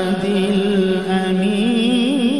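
A male qari's voice in melodic Quran recitation, holding one long drawn-out note on a steady pitch that breaks into wavering, ornamented turns near the end.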